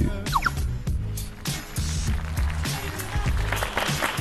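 Background music with a steady beat and bass, with a brief rising tone near the start.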